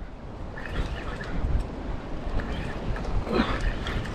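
Wind rumbling on the microphone over the wash of surf below, with a short faint sound about three and a half seconds in.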